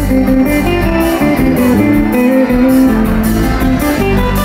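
Live salegy band playing an instrumental passage: quick electric guitar lines over bass and a steady drum beat.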